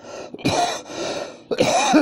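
A man coughing and clearing his throat in two rough bursts, the second one starting about a second and a half in.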